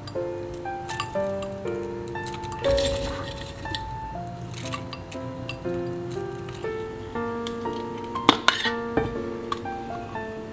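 Calm lo-fi background music with a steady run of piano-like notes. Over it come scattered light clicks and crackles of granola clusters being broken by hand and dropped into a bowl, with a louder cluster of clicks a little past eight seconds in.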